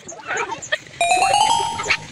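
Children's voices in the first second, then an added chime-like sound effect about a second in: a bright ringing tone that rises slightly in pitch and fades over nearly a second.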